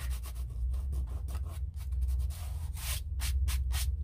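Fingers rubbing over dry cold-press watercolour paper to brush off dried salt crystals, a dry scratchy rubbing that turns into a run of quick strokes in the second half.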